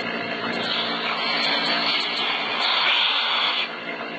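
Air hissing into an open teat cup of a goat milking machine as the cup is worked onto the teat: the vacuum leaks until the cup seals. The hiss starts under a second in and stops shortly before the end, over the steady hum of the vacuum pump.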